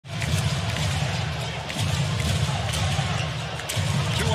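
A basketball being dribbled on a hardwood court, a series of irregular bounces over a steady arena rumble.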